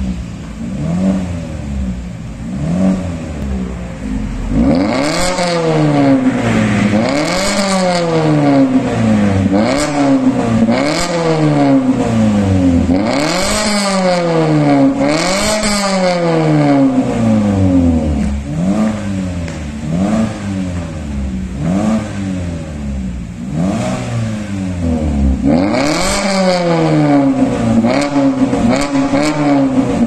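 Mazda 3's four-cylinder engine revved in repeated blips through a stainless steel cat-back valvetronic exhaust with dual tailpipes. The pitch climbs and falls every second or so. The revs are quieter at first with the exhaust valves closed, then louder from about four seconds in with the valves open.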